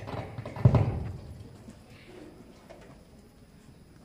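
A quick cluster of knocks and thumps on a wooden stage floor, the heaviest just over half a second in, dying away within about a second; faint room sound follows.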